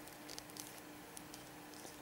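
Quiet room tone with a faint steady hum and a few small, soft ticks from fingers handling a plastic action figure.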